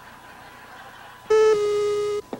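A loud electronic beep tone, a parody of the TV station's hourly 'top' time signal, starting about a second and a half in and held steady, dropping slightly in pitch just after it begins. Faint tape hiss comes before it.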